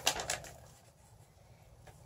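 Paper sheets of an invoice rustling as they are handled and unfolded: a few quick crinkles in the first half-second, then it goes almost quiet.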